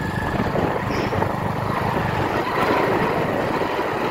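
Steady rumble and rush of a vehicle moving along a dirt road, with wind noise on the microphone; it starts abruptly and runs on evenly.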